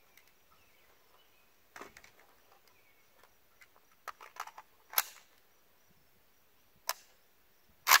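An AK-pattern rifle chambered in 5.56 firing spaced single shots, one about five seconds in and another about two seconds later. Before them come a quick run of small metallic clicks as it is readied, and near the end a louder double crack.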